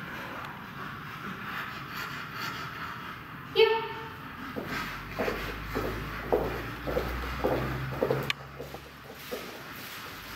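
One short, sharp spoken command from the handler about three and a half seconds in, then the soft, steady footsteps of handler and dog walking on the carpeted floor, about two steps a second, with a faint click near the end.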